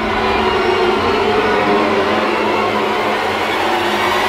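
Dramatic suspense background score: a dense, steady drone of held tones over a noisy swell, with no beat.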